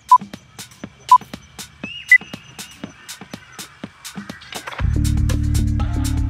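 Exercise-timer countdown beeps over background music with a steady beat: two short beeps a second apart, then a higher beep a second later marking the start. Near the end the music comes in much louder, with a heavy bass.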